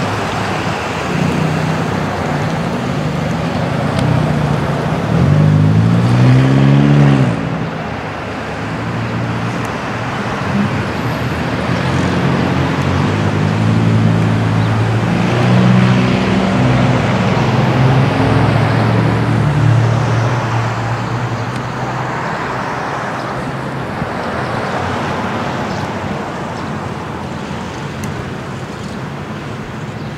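Road traffic: motor vehicle engines over a steady roadway hum. One engine rises in pitch about five seconds in and drops away about two seconds later, then a steadier engine sound swells and fades over the following ten seconds.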